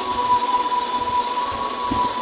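A steady background hum with a thin, level whistle-like tone held throughout, in a pause between spoken phrases.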